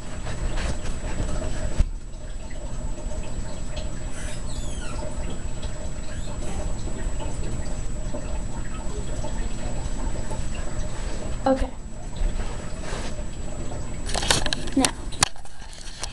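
Water running steadily from a tap while a small pet water bowl is filled, stopping about eleven seconds in.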